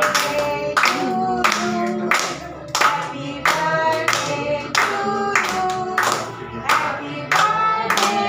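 Hands clapping in time, about three claps every two seconds, along with singing and music, as for a birthday song.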